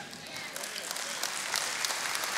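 Congregation applauding: an even spread of many hands clapping, growing slightly louder toward the end.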